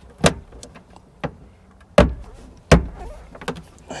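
A new cab recirculation air filter being lined up and pushed into its housing behind the seat of a Bobcat skid steer: a handful of sharp knocks and clicks against the plastic panel, the two loudest, with a thump in them, less than a second apart about halfway through.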